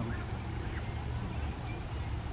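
Outdoor lakeside ambience: a steady low rumble with a few faint, short bird calls.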